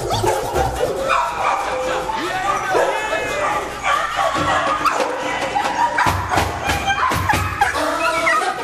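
Dogs in kennels barking, with music playing underneath.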